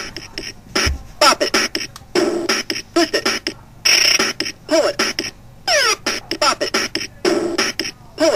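Bop It toy's electronic game sounds: a choppy, beatbox-style run of short sounds, several of them quick falling whistle-like sweeps.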